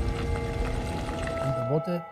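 Low rumble of tanks driving, mixed under held music notes; the rumble fades about one and a half seconds in and a man's voice begins near the end.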